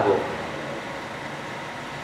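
A pause in a man's speech over a microphone. A steady, even background hiss with no distinct events fills it, and the tail of a spoken word is heard right at the start.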